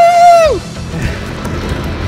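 A man's long, high, held "woo!" yell of excitement on a free-fall drop, ending about half a second in. It gives way to a quieter low rumble.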